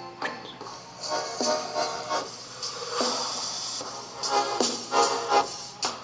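Music playing out loud from the earcup speakers of Bluetooth teddy-bear headphones.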